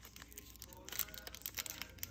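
Foil snack-bar wrapper crinkling and tearing as hands pull it open, a faint run of small crackles.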